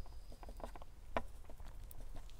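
A few light taps and clicks over a low rumble, the sharpest click a little past one second in.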